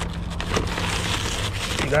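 Plastic shrink-wrap on a case of bottled water crinkling and rustling as the case is handed over, over a steady low hum.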